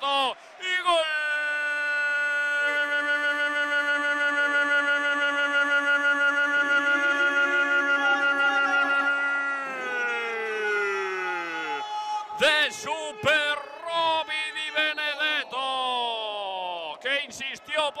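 Male sports commentator's drawn-out goal call: one voice holds a single shouted note for about nine seconds, then slides down in pitch. Excited shouted commentary follows in the last few seconds.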